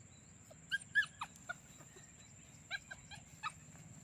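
Small black puppy giving short, high-pitched yips and whimpers: a cluster of about four around a second in and another cluster of about four near the end.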